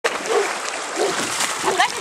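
Steady splashing of water stirred up by a Newfoundland dog at the side of an inflatable boat, with brief bits of voice over it.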